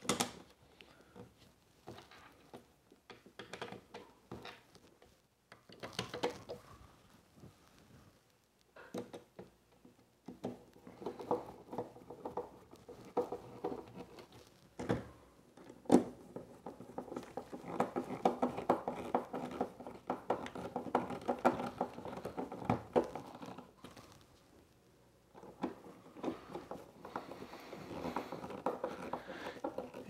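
Small hand screwdriver driving screws into the corners of a plastic electrical box cover, the screws scraping and creaking as they turn, between clicks and knocks as the box and tools are handled.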